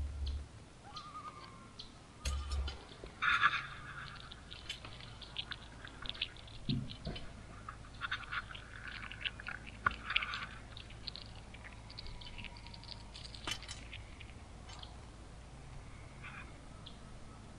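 A chipmunk crunching black sunflower seeds close up, heard as clusters of small crackling clicks that come thickest in the middle of the clip.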